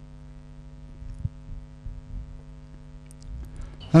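Steady electrical mains hum, a stack of even tones, with a few faint ticks; it fades away shortly before the end.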